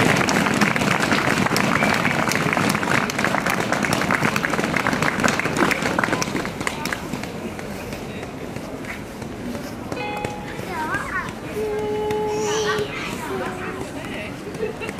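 An audience applauding at the end of a choir's song, the clapping dying away about halfway through. It leaves crowd voices and a few short held notes near the end.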